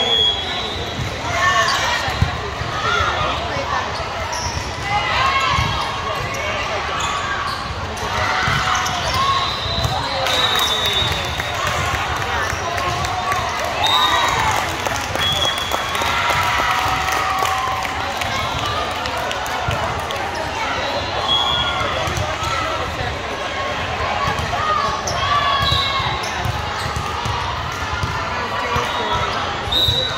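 Volleyball game sounds: the ball being struck and bouncing, with players' high voices calling and shouting over spectators' chatter, and a short round of clapping around the middle.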